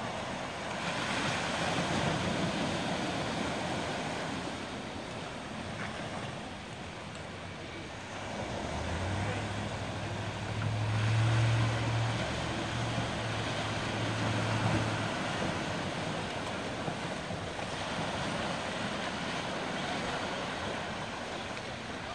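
Small waves breaking and washing onto the shore, the surf swelling and easing in turn. A low steady hum runs underneath from about nine to fifteen seconds in.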